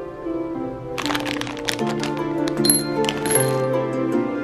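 Hard candy corn pouring out, a quick scatter of small clicks and clinks lasting about two and a half seconds from about a second in. Gentle background music with plucked, harp-like notes plays throughout.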